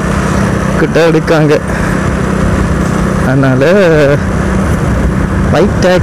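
Motorcycle engine running steadily while riding along at road speed, with wind rushing over the bike-mounted microphone.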